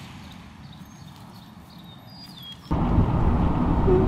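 Low, quiet background with a few faint high chirps. Then, near three seconds in, a sudden loud rumble of wind buffeting the microphone.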